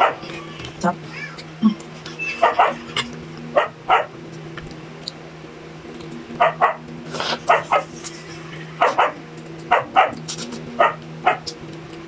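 A dog barking repeatedly: short, sharp barks at uneven intervals, roughly one a second, over a steady low hum.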